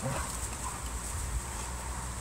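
Two dogs play-fighting on grass: a short dog vocal sound right at the start, then the scuffle of their bodies and paws, over a steady low rumble of wind on the microphone.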